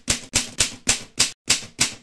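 Typewriter keystroke sound effect: a run of evenly spaced key clacks, about three to four a second, each one sharp with a short tail, ending abruptly.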